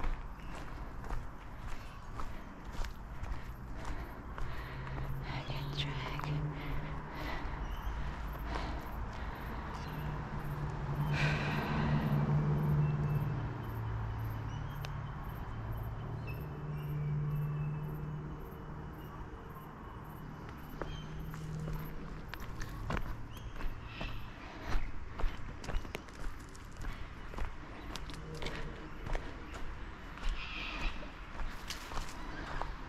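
Footsteps on a forest track, a regular run of short crunching steps. Through the middle a low, drawn-out voice-like hum rises and falls, loudest about halfway through.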